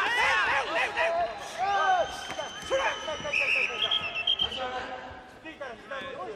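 Shouting voices around a karate bout, with sharp thuds of strikes landing, then a whistle held at one high pitch for about three seconds, blown as the referee stops the fight and separates the fighters.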